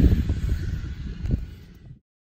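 Low rumbling background noise, strongest in the bass, fading away and ending in silence near the end.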